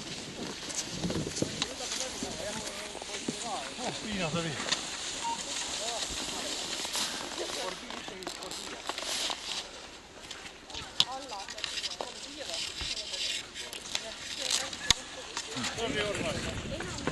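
Indistinct chatter of several people, with the hiss and scrape of cross-country skis on snow and scattered sharp clicks, the loudest about eleven and fifteen seconds in.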